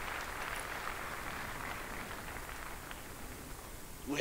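Faint, steady ambience of a large hall with a congregation: a soft even hiss without distinct voices.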